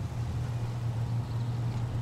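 Car engine idling, a steady low hum.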